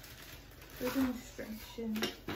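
A woman's speech, starting about a second in after a quiet moment; no other sound stands out.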